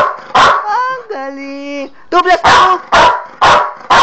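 A dog barking loudly: one bark early, then a rapid run of about four barks near the end.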